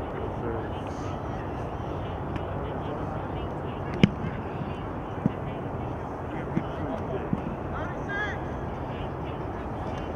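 Outdoor football-practice ambience: a steady background with distant talk from players, a single sharp smack about four seconds in, and a few fainter knocks after it.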